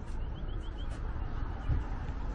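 A small bird chirping four short, slightly rising notes in quick succession, over a steady low outdoor rumble.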